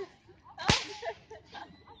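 A Roman candle firing a star without a burst charge: one sharp crack about two-thirds of a second in, with a few fainter pops after it.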